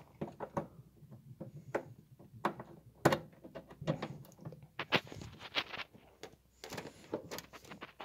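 VGA cable plug being pushed into the VGA port on the back of a desktop computer case: a string of irregular small clicks, knocks and scrapes of the plastic plug against the metal case.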